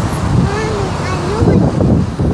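Street noise from traffic with wind rumbling on the microphone, and a few indistinct voices.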